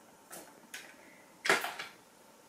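A few short, faint rustles, the loudest about one and a half seconds in, between otherwise quiet room tone.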